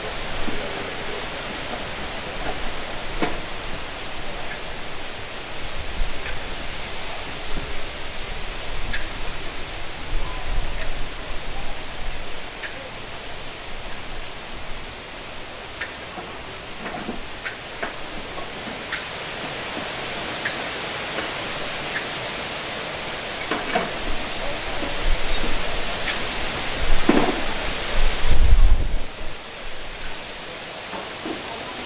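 Wind buffeting the microphone: a steady rushing hiss with low rumbling gusts, the strongest near the end, and a few faint scattered clicks.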